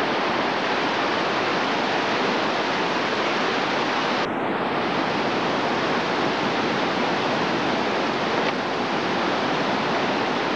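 Class 3 whitewater rapids rushing steadily: a loud, even rush of churning water.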